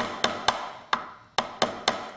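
Hammer driving a nail through a fish into a wooden dissecting board: a quick series of about seven sharp knocks.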